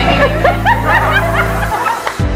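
People laughing in quick, short giggles over background music with a steady bass line; the bass drops out briefly near the end.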